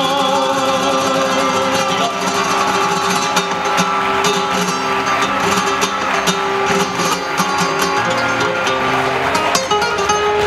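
Flamenco guitar playing on acoustic guitar, with many sharp plucked and strummed attacks. A sung flamenco phrase trails off about two seconds in, leaving the guitar alone.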